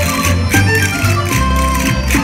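Traditional Mallorcan jota music for the ball de bot dance: a lively melody over a steady, repeating bass beat.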